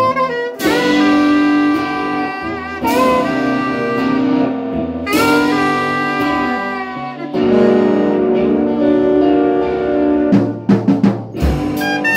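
Saxophone playing a jazzy melody of long held notes with an electric guitar playing along, ending in a run of quick short notes.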